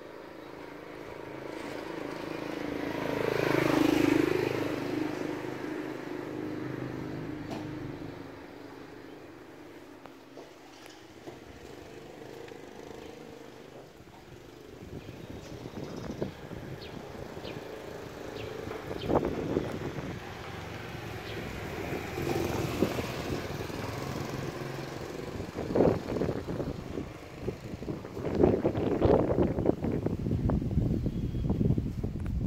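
A road vehicle's engine passes by, swelling to its loudest about four seconds in and fading away. Later there are irregular low rumbling bursts.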